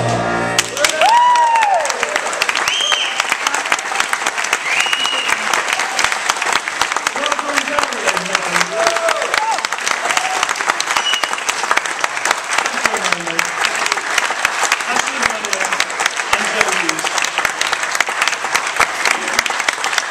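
The band's music ends right at the start, and then an audience applauds throughout, with whoops and cheers in the first few seconds.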